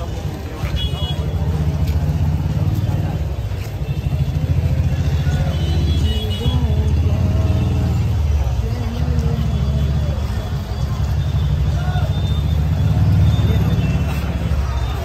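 Street procession crowd: many voices calling and chanting over a heavy, steady low rumble.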